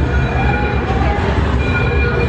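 Loud, steady low rumble from a haunted-house attraction's sound effects, with a few faint held tones above it.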